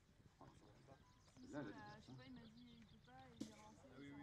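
Faint speech: a man's brief exclamation and some low, murmured talk, with little else heard.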